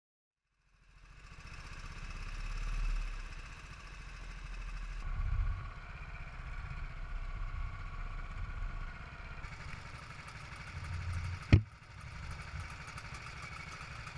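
Go-kart engines running on a kart track, heard from the driver's seat as a steady low rumble, changing abruptly where the footage is cut. A single sharp click comes near the end.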